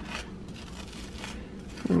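Faint scraping of a butter knife spreading vegan mayonnaise across a slice of toast.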